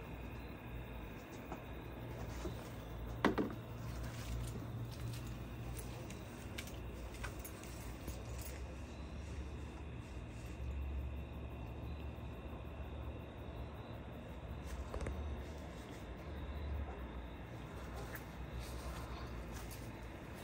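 Steady low hum of a 12-volt inline bilge air blower running, pushing fog through perforated drain pipe, with a faint hiss and scattered light ticks. A short, sharp sound stands out about three seconds in.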